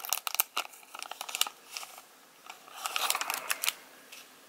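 Foil booster-pack wrapper crinkling and crackling in the hands as the cards are worked out of it. There is a run of sharp crackles for about the first second and a half, then a second stretch of crinkling near the end.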